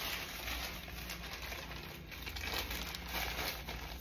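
Thin plastic mailer bag crinkling as it is handled, a light, irregular rustle.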